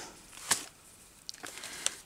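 Hands handling paper and fabric pieces on a journal page: a sharp click about half a second in, then a few faint ticks and rustles.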